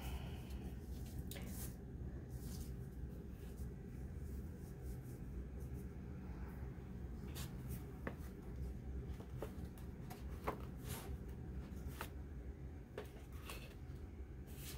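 Faint, scattered rustles and light taps of paper and card pages being handled and laid down, over a low steady hum.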